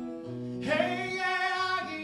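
Acoustic guitar playing chords, joined about half a second in by a male voice singing a long, high held note, scooping up into it, with no words.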